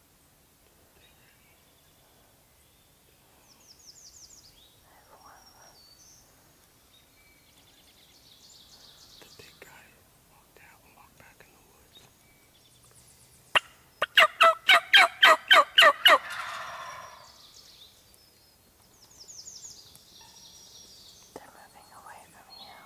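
A wild turkey gobbler gobbles once, loudly, about two-thirds of the way in: a quick run of about ten notes lasting some two and a half seconds. Faint songbird chirps come before and after.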